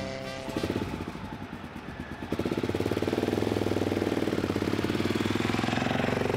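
Piston engine of a vintage early-aviation monoplane in flight, a rapid, even pulsing that grows sharply louder about two seconds in and then holds steady.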